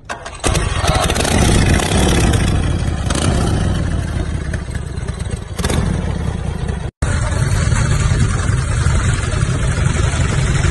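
Harley-Davidson Shovelhead V-twin motorcycle kick-started, the engine catching about half a second in and running steadily. After a brief cut near 7 seconds, the engine is heard running again as the bike is ridden.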